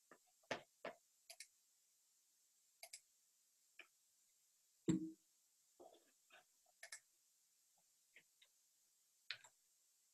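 Near silence, broken by faint, irregular clicks and taps over the webinar audio, with one slightly louder, deeper knock about five seconds in.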